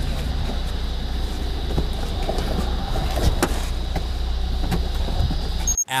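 Steady low hum of an idling car, with scattered knocks and rustles from the jostled body camera; it all cuts off sharply near the end.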